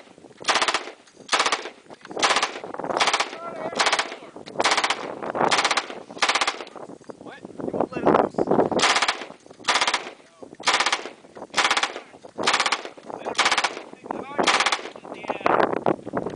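M249 SAW light machine gun firing repeated short bursts of automatic fire, each a fraction of a second long, about one burst every half second to one second. The firing pauses for about two seconds a little past the middle, then the bursts resume.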